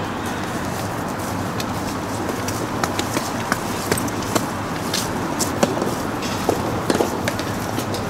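A soft tennis serve and rally: the rubber ball is struck by the rackets and bounces on the court, giving a series of short, sharp pops from about three seconds in to near the end. A steady background hiss runs underneath.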